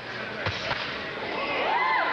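Two sharp smacks of boxing-glove punches, about half a second and three quarters of a second in: they sounded better than they really were, because most of the shots were blocked. Near the end comes a voice rising and falling in pitch.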